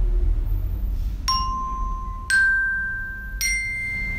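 Children's toy glockenspiel (a small metal-bar xylophone) struck three times with a plastic mallet, about a second apart: three rising notes, each left ringing, the second the loudest.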